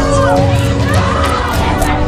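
Several people shouting at once, among them a woman crying out in distress, over a steady music track.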